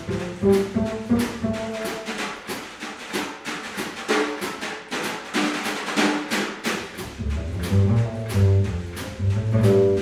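Small jazz band playing live: a Gretsch drum kit keeping time with even cymbal strokes, an electric guitar playing single notes, and low bass notes. The bass drops out for a few seconds in the middle and comes back in about seven seconds in.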